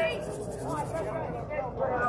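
Indistinct talking from onlookers, too unclear to make out words, over a steady low outdoor background.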